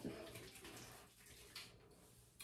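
Near silence, with faint rubbing of palms slick with hair oil and then of fingers working it into damp hair.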